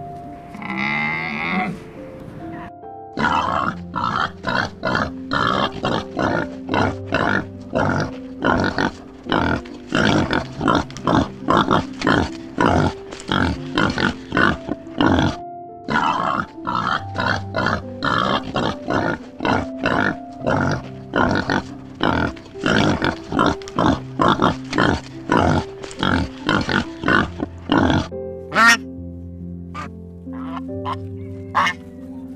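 Warthogs grunting in quick, repeated bursts, a few a second, over background music with steady held notes. A camel calls briefly near the start, and geese start honking near the end.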